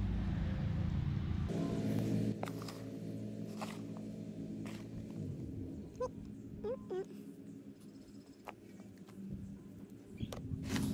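A pug snorting and snuffling close by. A steady low hum runs underneath and fades away over several seconds, and there are a few short chirps about six to seven seconds in.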